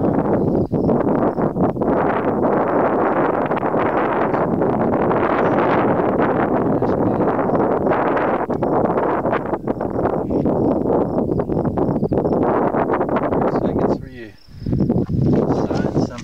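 Wind blowing across the camera's microphone: a loud, steady rush that drops away briefly about two seconds before the end.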